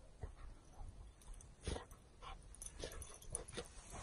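A dog bounding through deep snow, heard faintly as irregular short huffs and crunches as it pushes through the powder.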